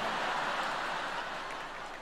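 A large theatre audience laughing together, a dense wash of crowd laughter that gradually fades.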